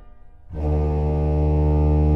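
Baroque pipe organ: the last of a chord dies away in reverberation, then about half a second in a full chord with a deep pedal bass enters and is held steady.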